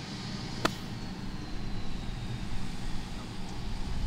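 A single sharp strike, about two-thirds of a second in, as a 54-degree wedge hits the sand and ball on a greenside bunker shot, over a steady low background rumble.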